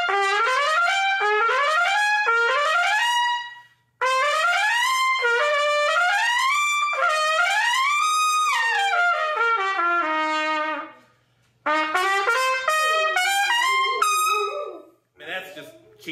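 Lotus Universal Bb trumpet, with a yellow brass and phosphor bronze bell, played loud through a lead mouthpiece in its brightest setup. It plays quick upward runs and arpeggios, then a phrase that climbs high and falls back, then a last phrase, with short breaks about four and eleven seconds in.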